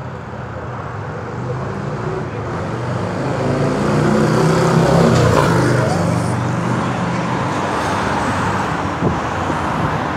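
A motor vehicle passing by on the road: its engine hum grows louder to a peak about halfway, drops in pitch as it goes by, then fades into steady traffic noise. A short knock near the end.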